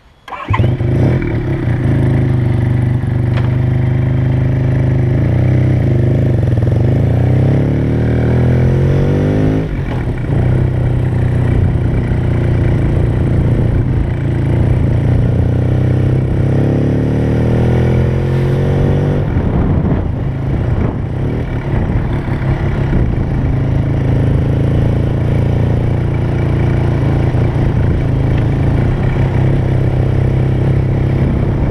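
Suzuki RE5 motorcycle's single-rotor Wankel engine comes in abruptly right at the start and runs loud and steady while riding. Twice, about a third of the way in and again past halfway, its note climbs and then drops back suddenly, as when accelerating and shifting up.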